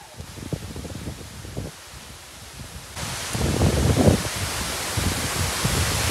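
Rushing roar of a tall waterfall in heavy flow, an even noise with no pitch. About halfway through it jumps much louder, with low gusts of wind buffeting the microphone.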